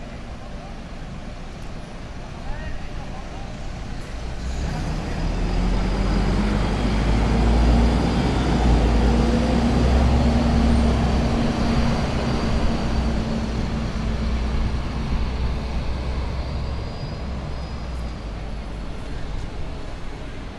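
City bus diesel engine pulling away and passing, its note rising over a few seconds, loudest in the middle, then fading, over steady street traffic.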